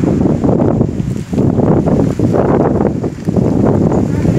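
Loud, gusty wind buffeting the phone's microphone, a rough rushing noise that surges and dips.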